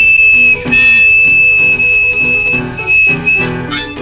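A blues harmonica solo holds one long high note for about three seconds, broken briefly about half a second in, over a rhythmic band backing; shorter notes follow near the end.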